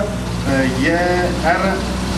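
Škoda Felicia rally car's engine idling, a steady low hum, under a man's talking voice.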